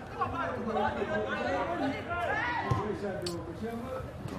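Several voices talking over one another in chatter, with a short sharp click about three seconds in.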